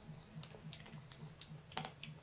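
Crisp, crunchy chewing of raw green mango slices, five or six sharp crunches roughly a third of a second apart, over a faint low hum.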